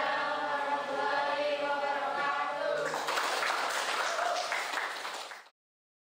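Several voices chanting together in unison, held and drawn out, then a noisier stretch of mixed voices. It cuts off abruptly about five and a half seconds in.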